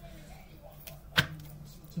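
A single sharp click or snap a little over a second in, over a faint steady low hum.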